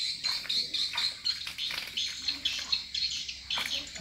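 Small birds chirping quickly and continuously, with a few short splashes from wading in shallow muddy water.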